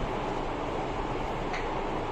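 Steady whooshing noise of a fan running in a small room, with a faint click about one and a half seconds in.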